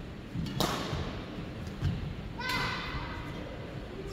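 Badminton rally: rackets striking the shuttlecock, with a sharp crack about half a second in, a duller thud near two seconds, and another hit at about two and a half seconds followed by a brief squeak.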